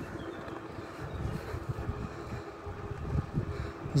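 Wind rushing over the microphone of a moving bicycle, with a steady low rumble from riding over the paved road.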